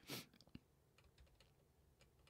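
Near silence, with a short noisy puff just after the start and then a few faint, scattered clicks of a computer keyboard.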